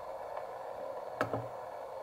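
Steady hiss of a homemade CW transceiver's receiver from its internal speaker, band noise with no signal tuned in, sitting mostly in a narrow band of the mid range. A couple of soft clicks are heard as the tuning knob is turned, about half a second in and a little after one second.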